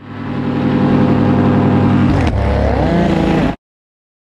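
Paramotor's Vittorazi Moster 185 two-stroke engine running loud and steady at high power, its note dipping and wavering a little past two seconds in; the sound cuts off abruptly near the end.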